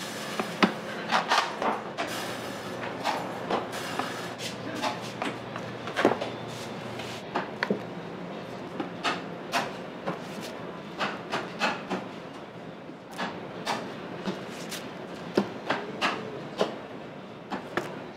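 Bakery work sounds: irregular sharp clicks, taps and knocks of hand tools and dough being handled on a wooden workbench and metal trays, over a steady low hum of kitchen equipment.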